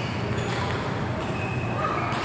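Table tennis ball clicking off the paddles and table as a rally ends, a few light knocks early on over the steady background noise of a large hall.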